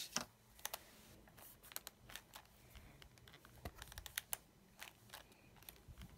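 Faint scattered clicks and taps from a MISTI stamp-positioning tool: a sharper click as its hinged clear-acrylic door with the rubber stamp comes down on the card, then small taps and ticks as the stamp is pressed down in several spots before the door is lifted again.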